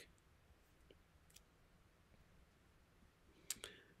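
Near silence: room tone, with a few faint clicks about a second in and again near the end.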